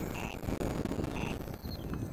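Wind rumbling on the microphone, with a short, faint electronic beep about once a second.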